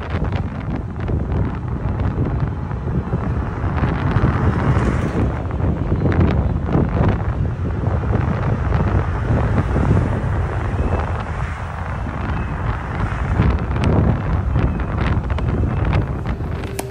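Wind buffeting the phone's microphone: a low, rumbling rush that swells and eases in gusts.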